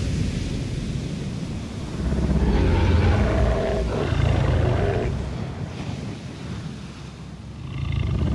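A giant movie monster's roar over a heavy low rumble, swelling about two seconds in and dying down near the end.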